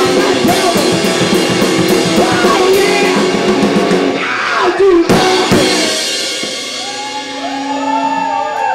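Two-piece rock band, drum kit and electric guitar, playing loudly with rapid drum strokes, closing with one hard final hit about five seconds in; after it the guitar keeps ringing with a few held tones.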